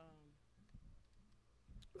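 Near silence: a pause in a live open-air set, with the tail of a faint voice at the start, a couple of faint clicks, and speech just beginning at the very end.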